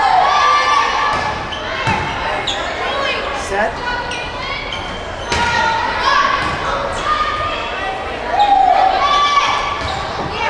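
Volleyball rally in a gymnasium: several sharp slaps of hands and arms on the ball, with players' calls and shouts in between, echoing in the large hall.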